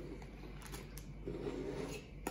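Faint handling noises: a plastic zip-top bag being set down on a countertop and a hand taking hold of a glass mason jar by its metal lid, with a few light clicks near the middle.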